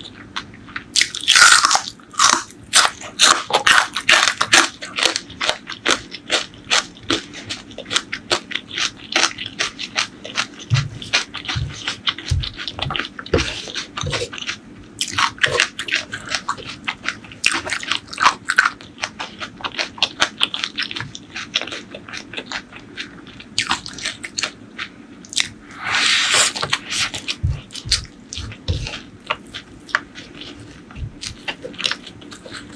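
Close-miked eating: crunchy biting and chewing of bitter gourd and crispy fried strands, a rapid run of crunches throughout. Louder bursts of crunching come about a second in, around the middle and near the end, with a few low knocks between.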